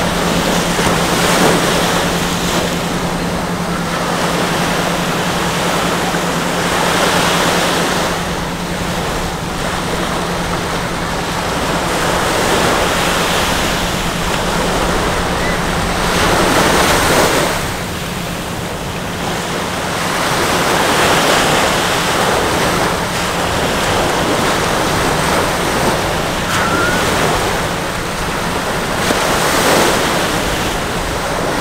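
Small waves breaking and washing up a sandy beach, the surf swelling and easing every few seconds. A steady low hum runs underneath.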